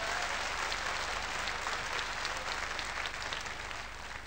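Audience applause, a dense patter of many hands, fading away toward the end.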